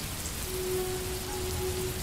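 Steady rain falling. A single steady low tone comes in about half a second in and holds.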